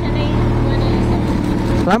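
Kawasaki Z H2's supercharged inline-four engine idling steadily.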